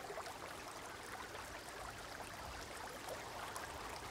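Faint trickling water, a nature-sound recording: a light, steady hiss of running water with scattered tiny drips.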